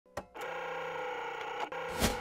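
Electronic intro sound effect: a sharp click, then a steady hum of several held tones, broken by a second click near the end.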